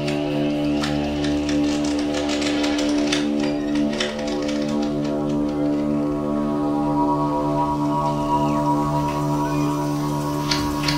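Live electronic laptop music: a sustained drone of many steady layered tones, with scattered clicks and crackles that are densest in the first few seconds. A tone glides upward near the end.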